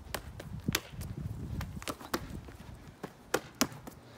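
Open hands slapping a leather Gaelic football in quick, irregular strikes, about seven of them, with the two sharpest near the end. Each slap is a tackle stroke knocking at the ball as it is moved about.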